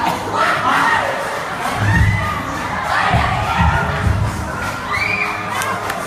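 Crowd of young people cheering and shrieking loudly over dance music with a pulsing bass beat.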